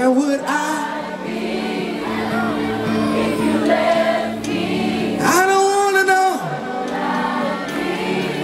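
Live gospel worship song: the band plays sustained chords under several voices singing, with a long held sung note about five seconds in.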